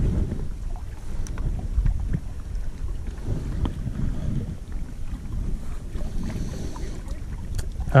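Steady low wind rumble on the microphone, with a few faint ticks scattered through it.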